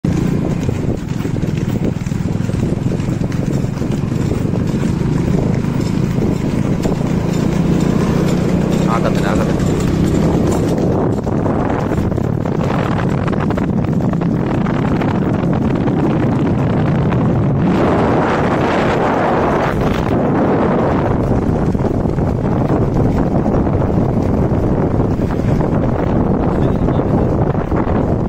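Wind rushing over the microphone of a moving motorcycle, with the motorcycle's engine running steadily underneath and voices mixed in.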